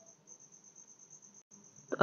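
Faint, high-pitched cricket chirping: a steady run of rapid pulses on one pitch over light room hiss. The sound cuts out completely for an instant about one and a half seconds in.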